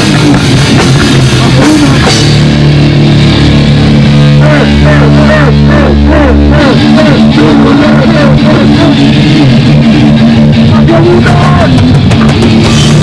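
Live hardcore band playing loud, with electric guitar and drums. For a few seconds near the middle the cymbals ease off and low chords are held.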